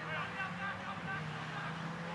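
Distant shouting voices, short broken calls, over the low steady drone of a vehicle engine whose pitch slowly rises.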